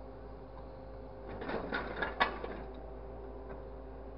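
Scrap metal clattering and clanking in a crane's orange-peel grapple for about a second, with one sharp clank about two seconds in. Under it runs the steady hum of the machine's engine.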